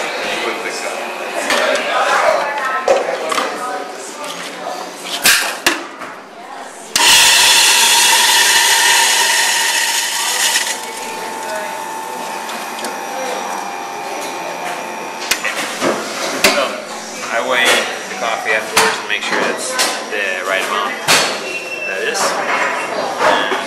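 Ditting burr coffee grinder grinding a dose of coffee beans: a loud burst of grinding starts suddenly about seven seconds in and lasts nearly four seconds, then the motor runs on with a quieter steady hum until about fifteen seconds in. Clicks and knocks of handling the grinder and its container come before and after.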